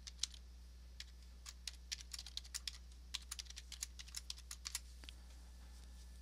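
Typing on a computer keyboard: a run of irregular, quick keystrokes that stops about five seconds in. A faint steady low hum lies underneath.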